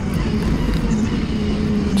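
Doosan 4.5-ton forklift's engine running steadily as the forklift drives forward, heard from inside the cab.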